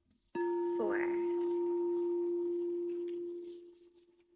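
Hot pink frosted crystal singing bowl struck once with a mallet about a third of a second in, ringing at one steady low pitch with a fainter higher overtone, then dying away near the end.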